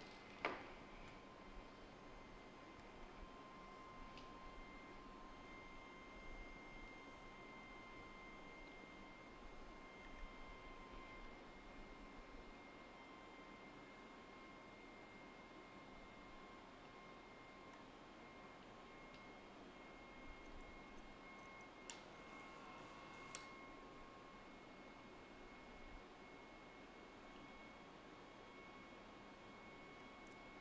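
Near silence: faint room tone with a thin, steady high whine. There is one sharp click about half a second in and a couple of faint ticks later on.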